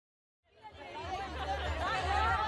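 Several voices talking over one another in an overlapping babble, fading in from silence about half a second in and growing louder.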